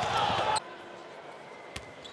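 Basketball game sound in an indoor arena: crowd noise and court sounds from the play. About half a second in it cuts off abruptly to quieter hall ambience, with one sharp click near the end.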